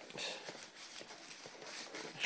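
Faint handling of cardboard and tissue-paper packaging: soft rustling with a few light, irregular taps.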